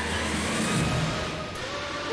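Background music from the show's soundtrack over a steady rushing noise, with no voices.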